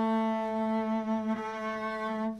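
Double bass bowed on one long held note, steady in pitch: the A that many students play too low.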